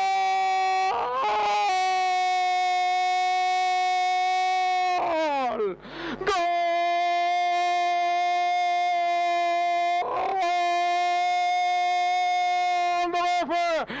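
A radio football commentator's long drawn-out goal cry ('Gooool'), one loud high note held for several seconds at a time. It breaks for quick breaths about a second in, around five seconds in (where the note slides down) and about ten seconds in. Near the end it turns into speech.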